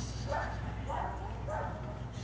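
A dog yipping three times in quick succession, about half a second apart.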